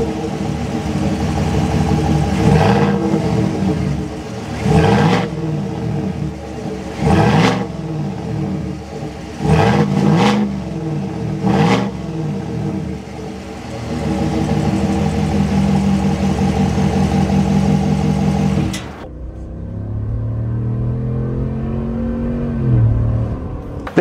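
The 6.2-litre V8 of a 2024 Chevrolet Silverado ZR2 Bison, heard from behind the truck at its exhaust, freshly started and blipped about half a dozen times in the first twelve seconds. It is then held at raised revs for several seconds and falls back quieter and lower near the end.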